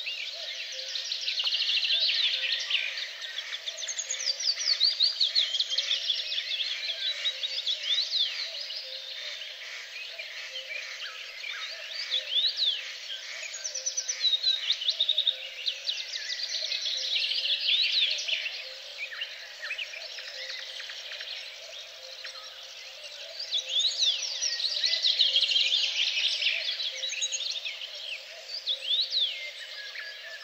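Several songbirds singing at once, overlapping chirps and trills that swell and fade in waves.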